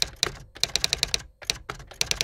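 Typing sound effect: a quick, uneven run of key clicks, about seven or eight a second.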